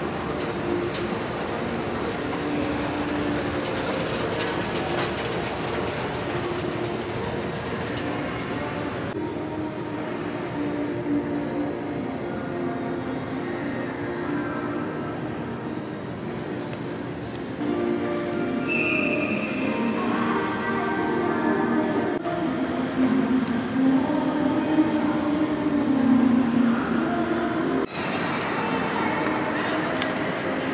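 Shopping-mall escalator running: a steady mechanical drone and rumble with low humming tones. About nine seconds in it cuts to a large mall concourse's ambience, with background music growing louder in the last part.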